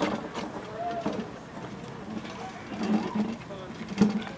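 Indistinct chatter of people talking at a distance, no words clear.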